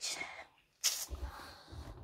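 Handling noise from a phone camera being picked up and moved: a brief rustle, a short sharp noise a little under a second in, then low rumbling bumps against clothing.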